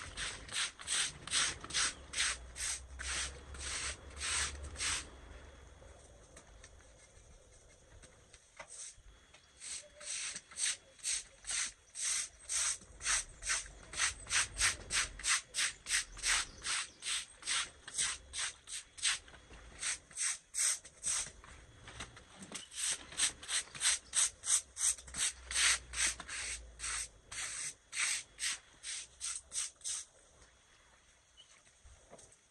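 Stiff-bristled deck brush scrubbing a wet stone-aggregate driveway in quick back-and-forth strokes, about two to three a second, working loosened moss and sludge off the surface. The strokes stop for about four seconds early on and briefly again about two-thirds of the way through.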